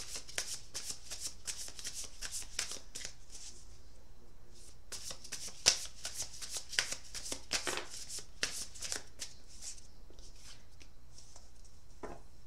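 A deck of oracle cards being shuffled by hand: quick runs of crisp card clicks for a few seconds, a brief pause, then a second run that thins out near the end.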